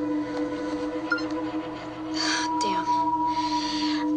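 Steady, drone-like background music of held tones, with a short soft breathy voice sound a little past halfway.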